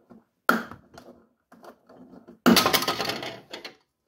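Plastic clicking and scraping as a round plastic cover is worked loose and pried off the inside wall of a fridge compartment. There is a sharp click about half a second in and small knocks after it. A louder crackling scrape of about a second comes about two and a half seconds in.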